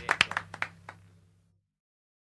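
Handclapping from a small audience, sharp and irregular, dying away over about a second and a half over a low hum before the sound cuts to silence.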